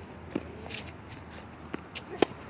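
Quick footsteps and shoe scuffs of a tennis player running and setting his feet on a hard court, with a few light, sharp clicks spread through the moment.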